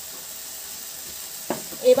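Tomato and poppy-seed (posto) paste cooking in a steel kadai over the gas flame, giving a steady quiet sizzling hiss. A short click sounds about one and a half seconds in, and a voice begins right at the end.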